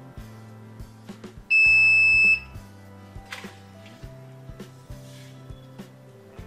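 A circuit-board buzzer gives one loud, steady, high-pitched beep of just under a second, about a second and a half in, as the microcontroller board powers up. Background music plays underneath.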